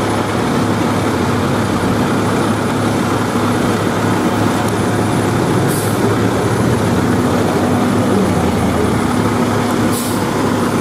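Diesel engine of an FDNY aerial ladder truck running at low speed, a steady heavy hum, with a short high hiss about six seconds in and another near the end.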